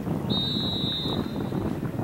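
Wind buffeting the microphone, with one short steady whistle blast, under a second long, shortly after the start, from a sports whistle.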